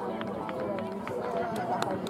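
Indistinct chatter of several people talking at once, with a few sharp clicks scattered through it.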